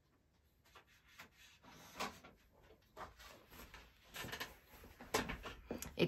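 Sheets of copier paper rustling and sliding as they are picked up and laid over card on a craft mat, with a run of soft brushes and taps starting about a second in.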